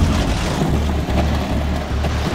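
Loud action-film soundtrack mix: a dense rushing noise with a low, repeating pulse about three times a second that starts under a second in.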